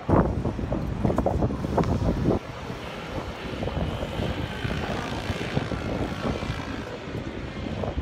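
Wind rumbling on a phone microphone, cutting off sharply about two and a half seconds in. It is followed by a steady drone of engine noise from traffic on a city street, with a faint whine.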